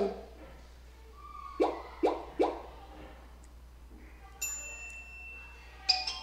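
Cartoon sound effects: three quick plopping notes, each sliding down in pitch, about a second and a half in, then one bright ringing ding near the end, followed by a few short plinks.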